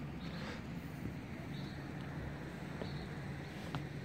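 Quiet outdoor background: a low steady hum with a few faint, short high chirps spaced about a second and a half apart.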